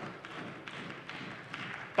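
Applause from members of a parliamentary chamber: a steady, dense patter of many hands at a moderate level.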